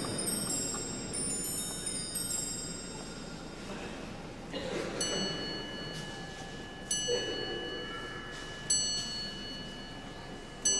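Bells or chimes struck one note at a time, three strikes spaced a couple of seconds apart from about halfway through, each note ringing on at length with clear high tones.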